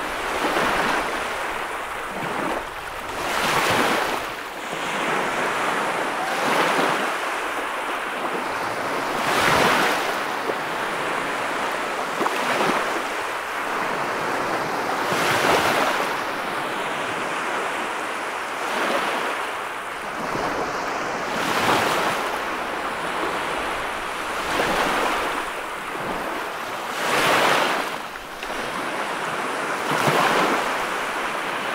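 Ocean surf breaking and washing up the beach: a continuous rush of foam that swells into a louder wave crash about every three seconds.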